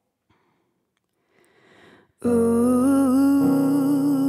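Near silence for about two seconds, then a Nord stage keyboard starts the song's intro: sustained chords with a slight waver in pitch, changing to a new chord about a second later.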